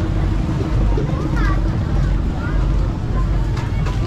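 Busy outdoor plaza ambience: a heavy, steady low rumble with a faint hum, and brief snatches of passers-by's voices about one and a half and two and a half seconds in.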